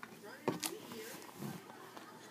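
Spiral-bound sketchbook being handled and lifted: a sharp click at the start, then a short knock and paper rustle about half a second in, with brief voice sounds.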